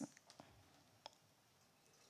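A few faint clicks from a laptop's mouse or trackpad, pressed while trying to advance a presentation slide that won't move on.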